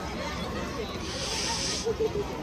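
A short hiss lasting just under a second, starting about a second in and cutting off sharply, over the chatter of people in the background.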